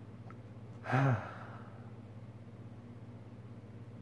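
A man's sigh of frustration about a second in: a voiced breath out that falls in pitch, over a faint steady low hum.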